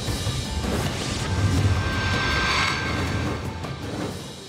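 Newscast segment bumper sound effect: a crash-like hit that swells into a rushing, rumbling whoosh with music, building to a peak a little past the middle and easing off near the end.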